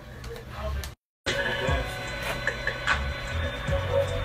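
Hip-hop music with a steady, deep bass line, under indistinct voices; the sound cuts out completely for a moment about a second in.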